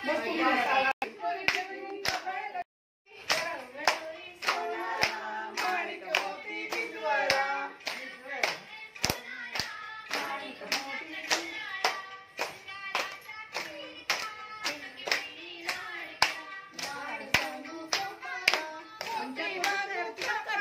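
A group of women clapping hands in a steady rhythm, about three claps a second, with voices singing along. The sound cuts out briefly about three seconds in.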